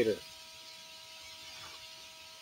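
A man's voice ending a sentence right at the start, then a pause that holds only faint steady hiss and a thin steady whine in the background.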